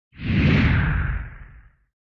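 A single whoosh transition sound effect with a deep low end. It swells in quickly and fades away over about a second and a half.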